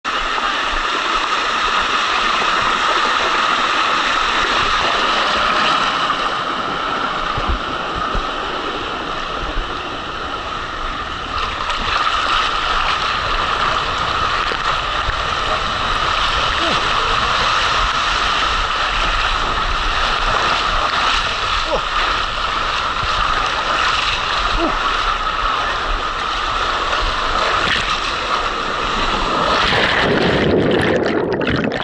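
Water rushing down an open fibreglass water slide flume as a rider slides through it, heard close up from the rider's camera: a loud, steady rush, slightly quieter for a few seconds about a third of the way in.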